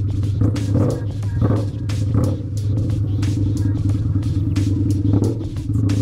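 Motorcycle engine running at a steady cruise, with wind noise buffeting the microphone.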